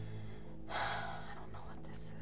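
A person's short, sharp intake of breath, under a second long, about halfway through, over a steady low hum.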